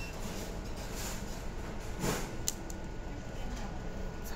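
Small handling noises at a desk over steady room hum: a brief rustle about two seconds in, then a single sharp click.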